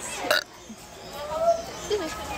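A short throaty vocal noise from a person about a third of a second in, then faint voices in the background.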